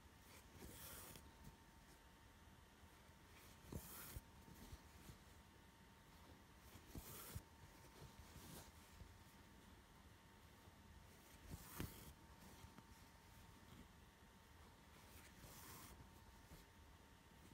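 Faint swishes of embroidery thread being drawn through etamin cross-stitch cloth as cross stitches are worked with a needle, five times a few seconds apart, with small clicks and rustles of the handled fabric.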